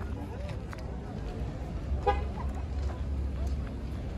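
Outdoor car-market ambience: a low steady rumble with faint distant voices of people talking, and one brief pitched blip about two seconds in.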